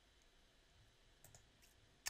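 Near silence, with two faint, quick computer mouse clicks a little past the middle.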